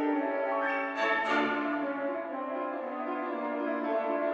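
A symphony orchestra playing a classical passage, with horns prominent and many instrument lines moving together. There are two sharp, bright accents just after a second in.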